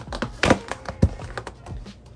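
Large cardboard shipping box being opened by hand: flaps pulled and tape torn, giving a few sharp cracks and thunks. The loudest comes about half a second in, with a low thunk about a second in.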